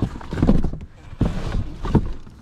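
Shoes being rummaged through in a large cardboard box: a few irregular hollow knocks and thumps as shoes bump against each other and the cardboard walls.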